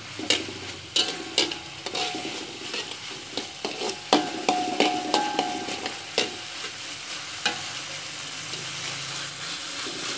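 A metal spatula scraping and tapping around a steel wok, stirring vegetables that sizzle in hot oil. The strokes come irregularly over a steady frying hiss, and the wok rings briefly a few times near the middle.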